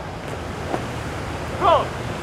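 Steady wind rumble on the microphone, with a short voice-like call about one and a half seconds in.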